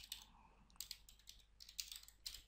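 Faint, irregular keystrokes on a computer keyboard as a word is typed.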